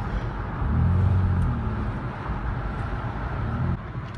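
Muffler-deleted exhaust of a 2013 Ford Explorer's 3.5-litre V6, pulling at steady revs with a low, even tone over road noise; the exhaust note comes up about a second in and cuts off sharply near the end.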